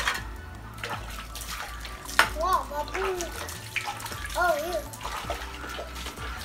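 Steel pots and pans clinking and clattering, with water sloshing, as dishes are washed by hand in a bucket.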